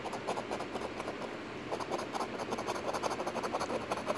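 A coin scraping the latex coating off a paper scratch-off lottery ticket in a rapid run of short strokes.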